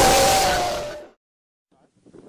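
Horror jump-scare sound effect: a loud, harsh hissing blast with a faint falling tone under it, dying away within about a second, then silence.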